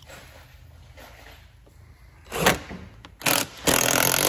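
A cordless power driver run in three short bursts in the second half, the last lasting about a second, while fastening a bolt on the ATV's rear bodywork. Before that there is quiet scraping and handling of parts.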